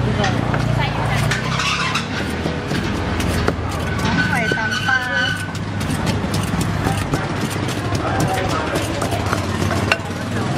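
Wooden pestle pounding chillies in a clay mortar for som tum, a run of quick repeated knocks, over a steady low engine drone of street traffic and some voices.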